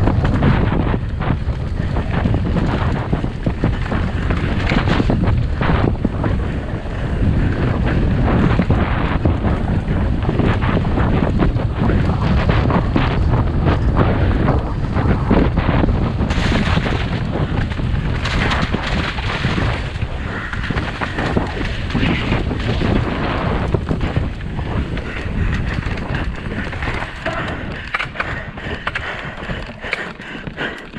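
Mountain bike descending a rough forest trail at race speed, heard from a camera mounted on the rider or bike: wind rush on the microphone over a constant rattle of tyres on dirt and rock, with many sharp knocks from impacts.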